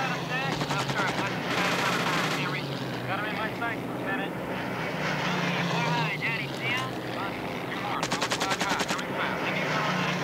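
WWII film soundtrack played over loudspeakers: the steady drone of a bomber's piston engines, with shouted crew voices. Machine-gun fire comes in a burst about 1.5 s in and in a rapid rattling burst about 8 s in.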